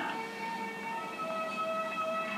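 Background film-score music of held, sustained tones that change to different notes a little over a second in, over a steady tape hiss.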